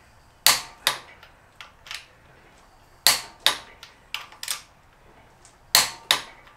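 Click-type torque wrench clicking on the flywheel bolts of a BMW M62 V8 as each bolt is checked at its set torque (about 120 Nm). Sharp clicks, often in pairs about half a second apart, come several times.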